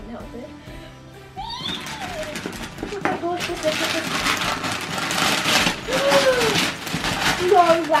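Wrapping paper crackling and tearing as a present is ripped open, starting about a second and a half in and getting louder, with a few brief vocal sounds; quiet background music is under the first second or so.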